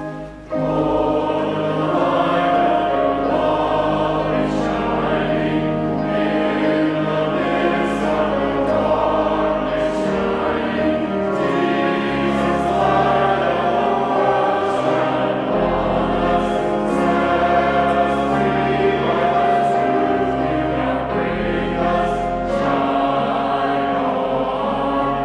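Choir and congregation singing a hymn together with organ accompaniment, the organ's low notes held under the voices. The singing comes in about half a second in, after a brief break in the organ.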